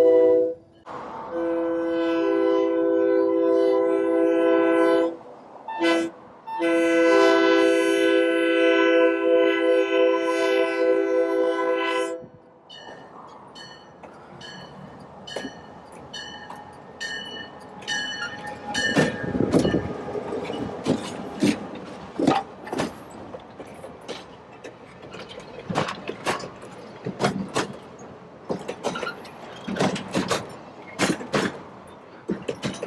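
Air horn of a Great Northern-painted EMD F7 diesel locomotive, heard from inside the cab: a chord of several notes, sounded as a brief blast, a long one of about four seconds, a short one and a long one of about five and a half seconds. After that the train rolls past close by, with a run of sharp clicks and clunks from the wheels on the rail.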